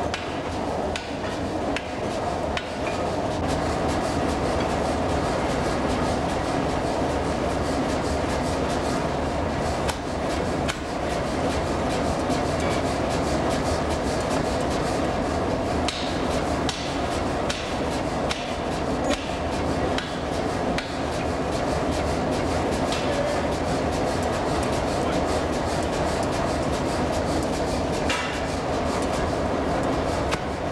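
Mechanical forging hammer pounding continuously, driving a set chisel through a red-hot iron bar to cut it into pieces.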